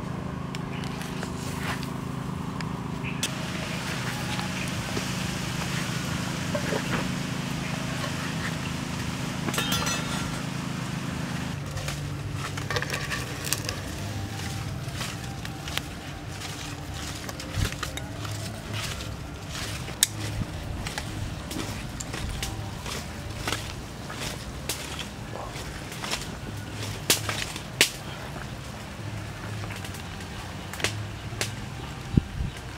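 Soup broth boiling in a metal pot over a wood fire, with a steady low hum beneath it that changes pitch about a third of the way in. From about halfway on, metal tongs stir and knock against the pot, making a run of sharp clicks, with a few louder ones.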